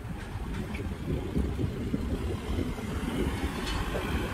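Cars driving slowly past on a parking deck: a steady low engine and tyre rumble.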